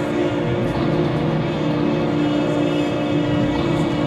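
Electronic drone music from a VCV Rack software modular synth patch: many steady, layered held tones over a rough, engine-like low rumble, running without a break.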